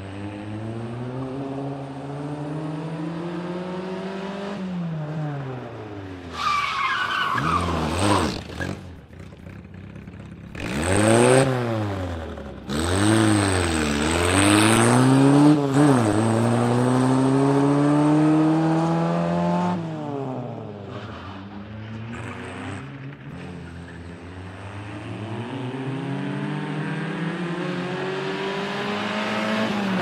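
Fiat 126p with a swapped-in 903 cc four-cylinder engine, revving hard and dropping back repeatedly through gear changes, with a burst of quick rev blips in the middle. The tyres squeal briefly about six to eight seconds in.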